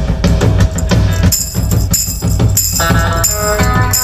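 A live rock band starts a 1960s surf-rock song: drum kit and bass drive a steady beat, and electric guitar plays along. A tambourine is shaken in rhythm from about a second in, and held chords come in near the end.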